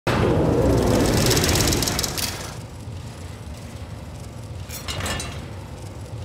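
Sound effects for a title graphic with a rolling mechanical counter. A loud whoosh and rumble runs for about two seconds and fades to a low drone, and a few sharp metallic clicks come near the end.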